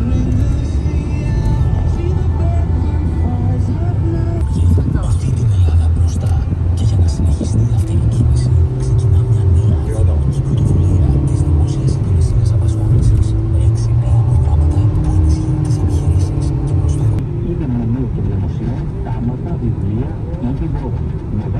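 Steady road and engine rumble of a moving car, heard from inside the cabin, with music and a singing or talking voice playing over it.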